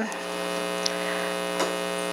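Steady electrical mains hum with a stack of many even overtones, picked up through the microphone and sound system.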